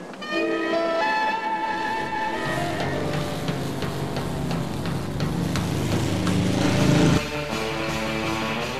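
Music with held, guitar-like notes. After about two and a half seconds a hot rod roadster's engine comes in under it, revving and growing louder, then cuts off abruptly at an edit near the end.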